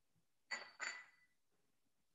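Two faint, light clinks of kitchenware about a third of a second apart, each with a short ringing tail, as red pepper is added to the food processor.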